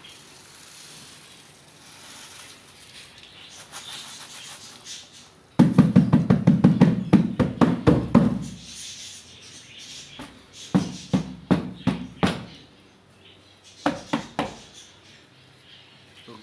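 Washed, still-wet bird seed poured from a plastic tub onto a sheet spread over a rope bed: a rapid rattling patter of grains hitting the cloth. It comes in a loud dense run about midway, then in two shorter bursts near the end.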